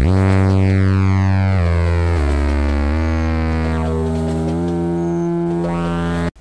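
Electronic synthesizer music: a sawtooth-wave synth holds sustained bass notes that step to a new pitch every second or so, with filter sweeps rising and falling over them.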